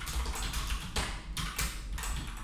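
Computer keyboard being typed on, keystrokes coming in short bursts.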